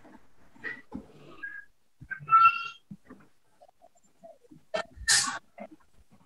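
A short high-pitched animal call about two seconds in, and a brief hissing burst about five seconds in.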